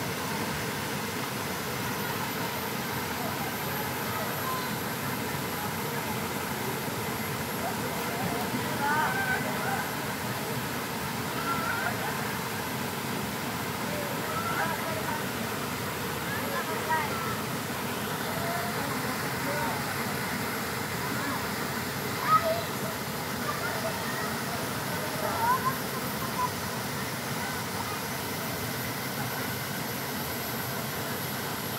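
Steady rush of a small waterfall pouring into a rock pool, with voices of people in the water calling out now and then, the sharpest call about two-thirds of the way in.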